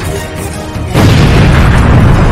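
Edited-in explosion sound effect: a sudden loud boom about a second in, followed by a sustained rumble, over background music.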